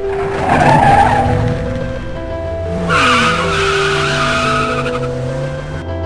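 Car tyres squealing twice over music with steady held notes and a low bass. The first squeal is short, in the first second or so. The second is longer and wavering, starting about three seconds in.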